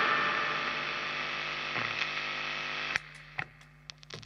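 The last electric guitar chord, played through a Triungulo Lab WH-X wah pedal, rings out and fades into steady amplifier hum and hiss. About three seconds in, a click cuts off most of the hiss, and a couple of faint clicks follow.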